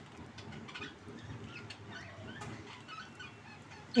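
Quiet background with faint, scattered bird calls.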